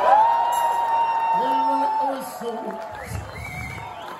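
A long, high whoop that glides up and is held for about two seconds, followed by lower shouts, as the song stops.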